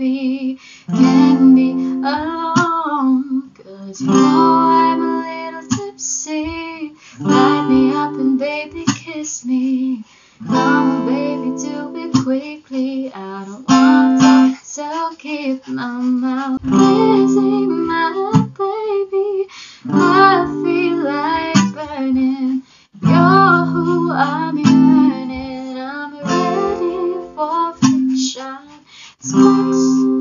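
Acoustic guitar, capoed, strummed in a steady up-down pattern through a chord progression, with a woman singing along in phrases.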